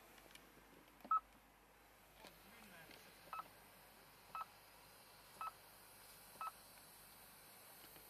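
Honda Pilot instrument-cluster chime with the engine off: one loud short beep about a second in, then four more beeps about a second apart. Each beep confirms a step of the traction-mode selector through the Normal, Snow, Mud and Sand settings.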